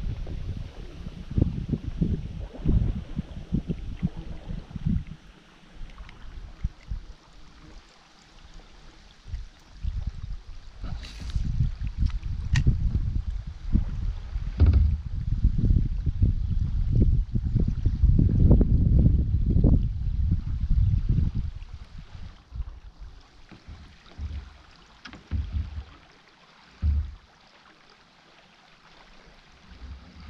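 Gusty low rumble of wind buffeting the microphone on the bow of a small boat on a river, heaviest in the middle and easing off near the end. A few sharp clicks come about 11 and 12 seconds in, and a short knock comes near the end.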